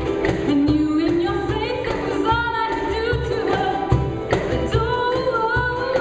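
Acoustic folk group playing live: voices singing a held, gliding melody over ukuleles, with a steady percussion beat.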